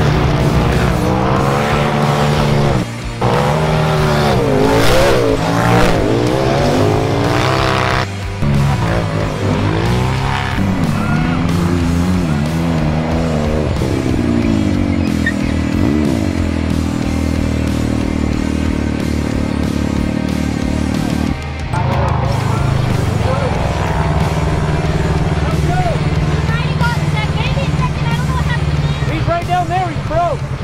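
Side-by-side UTV race engines revving hard, their pitch climbing and dropping with the throttle, broken by several abrupt changes in the sound. A steadier engine drone runs through the middle, with music underneath throughout.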